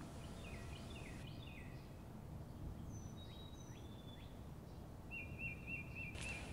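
Faint songbirds calling over a low, steady background rumble: a cluster of short sweeping chirps in the first second or so, a few more calls midway, and a quick run of about six repeated notes near the end.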